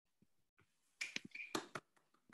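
A quick run of about five sharp clicks within less than a second, starting about a second in, on an otherwise faint track.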